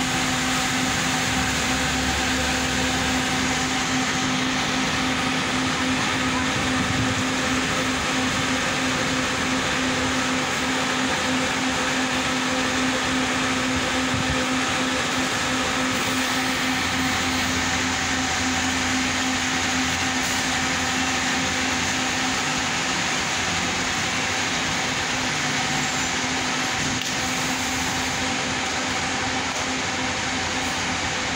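Diesel coach idling close by: a steady drone with a fixed-pitch hum that doesn't change throughout, with a deeper rumble rising for a while about a second in and again in the second half.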